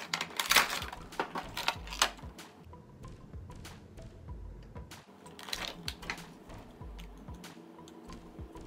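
Cardboard Funko Pop box being opened and its clear plastic insert handled, giving short crinkling and crackling bursts in clusters, over quiet background music with a low note about every two seconds.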